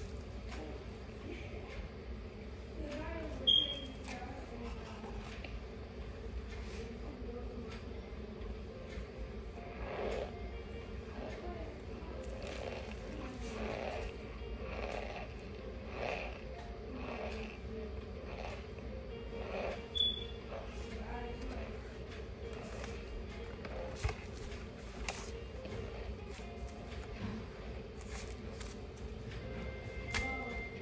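A mouthful of raw Maizena corn starch being chewed: a run of small crunching clicks, sparse at first and coming thick and fast from about a third of the way in, over a steady low hum.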